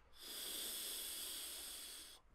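Air drawn through the fully opened dual airflow slots of a Vapx Geyser 21700 pod mod during one long inhale: a smooth, even hiss lasting about two seconds.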